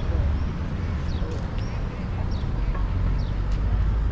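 Small birds calling with short, high, falling chirps about twice a second over a steady low outdoor rumble.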